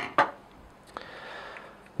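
Handling of the Brother laser printer's black plastic FCU unit: two sharp plastic knocks at the start, the second louder, then a click about a second in and a faint scraping as it is moved into place.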